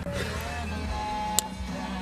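One sharp click about one and a half seconds in, a dash-mounted rocker toggle switch being flipped to turn the LED pod lights off, over a steady low hum.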